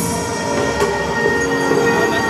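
Live pop band music: a held chord of steady, sustained synth-like tones with a few sparse drum hits.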